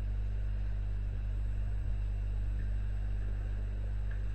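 Steady low electrical hum from the recording setup, unchanging throughout.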